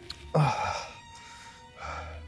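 A man's short, sharp gasping breath about a third of a second in, with a quieter breath near the end, over soft background music.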